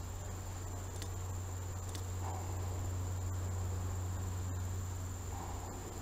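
Steady high-pitched insect chorus in tropical garden foliage, over a low steady hum, with a couple of faint clicks about a second and two seconds in.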